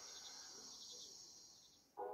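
Faint night-time crickets chirping steadily in a music video's opening ambience, fading out near the end.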